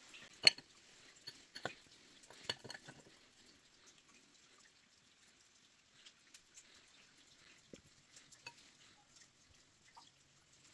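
A few sharp metal-on-metal clinks of hand tools against engine parts, the loudest about half a second in and the rest within the first three seconds, then only a few faint ticks.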